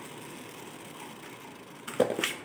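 A Beyblade Burst top spinning in a plastic stadium, making a faint steady whir with a light click or two.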